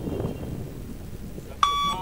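Luc Léger shuttle-run test recording sounding a single short electronic beep, a steady high tone, near the end. The beep is the signal for the runner to be at the line and turn for the next shuttle.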